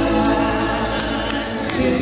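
Live gospel band playing, with voices singing long held notes over electric guitars, drums and keyboard; a few cymbal strikes cut through.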